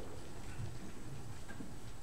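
Low room sound of a congregation getting to its feet, with faint scattered shuffles and knocks.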